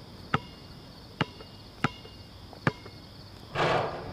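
Basketball bouncing four times on a concrete outdoor court, each bounce a sharp smack with a short ring, then near the end a louder brief swish as the ball drops through the hoop's net. Crickets chirp steadily underneath.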